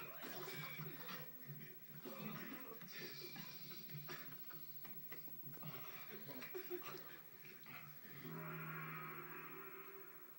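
A group of men's voices heard through a television speaker, loud and jumbled, with music under them. In the last two seconds a steady held tone takes over.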